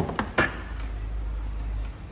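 Plastic engine top cover being lifted off its mounts and handled: three quick knocks in the first half second, followed by a low steady rumble that stops near the end.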